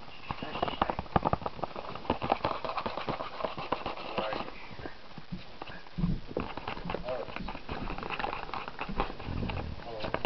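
Ferret kits scrabbling and clawing in a thin cardboard box, a rapid irregular patter of taps and scratches with a lull in the middle.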